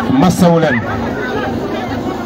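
A man's voice calling out a short phrase in the first second, then steady crowd chatter.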